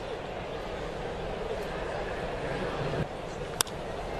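Steady crowd murmur at a ballpark. About three and a half seconds in comes a single sharp crack of a bat meeting the ball.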